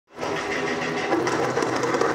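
Belly dance music playing over loudspeakers: sustained tones with quick percussion strokes, starting abruptly.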